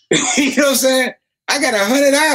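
A man stammering nonsense syllables, "homina homina homina", in two sputtering runs with a short break between them: a comic imitation of someone lost for words.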